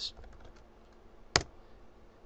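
Computer keyboard typing: a few faint keystrokes, then one sharper, louder key press about a second and a half in, the Enter key that runs the command.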